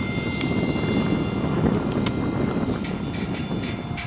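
ParkZone F-27Q Stryker's electric pusher motor and propeller in flight, a steady high whine with several overtones, over a low rushing noise.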